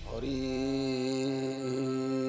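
A man's voice chanting a single long held note as a devotional invocation. It glides up into pitch just after the start and holds steady, with a brief dip near the end.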